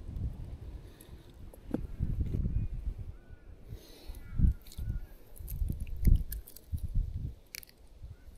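Dull, irregular thumps and handling noise as a freshly caught redfin is picked up off dry ground and knocked on the head to dispatch it, the strongest knocks about halfway through and at around six seconds.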